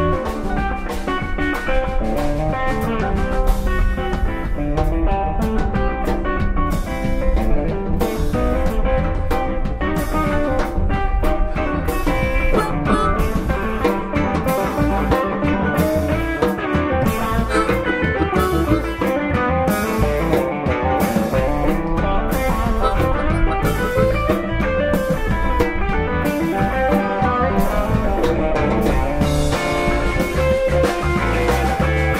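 Live electric blues band playing an instrumental passage: electric guitars (a Les Paul and a Telecaster) over bass guitar and a drum kit, with no singing.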